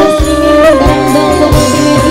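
Live tarling dangdut band music: a melody line with sliding, bending notes over bass and drum beats, played loud through the stage sound system.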